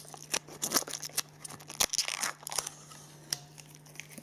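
Blue protective plastic film being peeled off the metal back plate of a model aircraft display stand: a run of irregular crackles and sharp snaps, thinning out in the last second.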